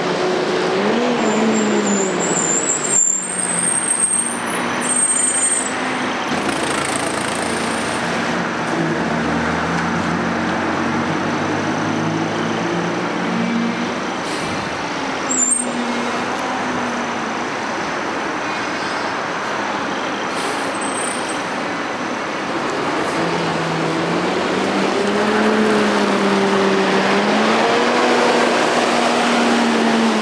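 Double-decker diesel buses running along a street, the engine note rising and falling as they accelerate and change gear, over steady traffic noise. Short high-pitched squeals a few seconds in and again about halfway through.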